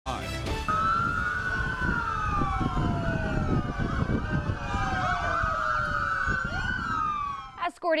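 Several police sirens wailing at once, their pitches rising and falling out of step with one another, over a steady low rumble. They cut off suddenly just before the end.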